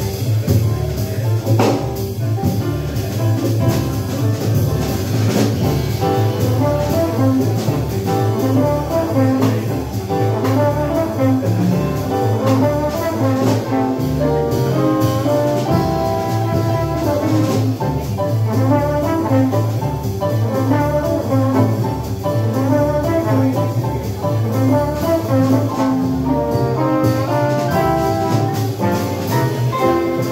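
Live jazz quintet playing: a trombone carries a melody line over a double bass keeping a steady, even beat, with piano, guitar and drums.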